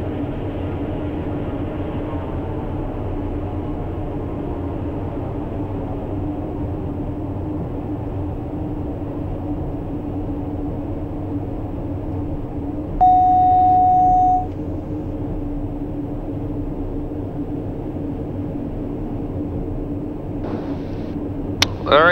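TBM 960's Pratt & Whitney PT6E turboprop engine and propeller droning steadily at low taxi power, heard in the cockpit, its pitch easing down over the first few seconds. About halfway through, a loud steady electronic beep sounds for about a second and a half.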